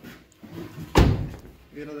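A car door slammed shut about a second in: one sharp impact with a heavy low thud.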